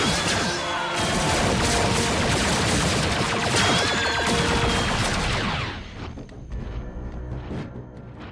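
Sci-fi battle sound effects: rapid energy-blaster fire, whooshes and explosions over a dramatic music score, with gliding whines running through the din. The battle noise cuts off abruptly about six seconds in, leaving quieter, tense music.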